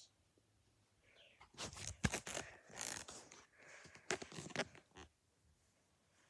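Rustling fabric and handling knocks as a doll's jacket is pulled onto a baby doll, starting about a second and a half in, with a sharp knock about two seconds in.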